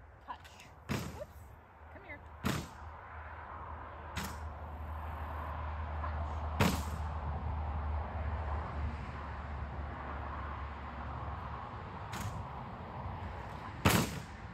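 Sharp knocks and clacks from a slanted board training obstacle as a dog works on it, about seven in all, irregularly spaced. A low rumble swells through the middle and fades before the end.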